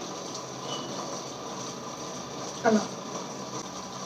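Steady hiss of room noise, with one brief murmur from a woman's voice a little before three seconds in.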